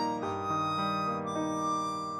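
Harmonica playing a slow hymn melody in held chords, the notes changing about every half second.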